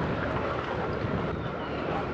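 Steady wind noise on the microphone with outdoor harbour background noise, no distinct event standing out.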